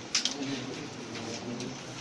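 Soft, low cooing bird calls, a few times, in a small room, with a sharp click just after the start.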